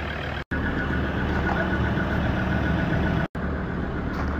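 Ford Ranger's 3.2-litre five-cylinder Duratorq turbo-diesel idling steadily, heard from the open engine bay. The sound drops out twice, briefly, where the recording is cut.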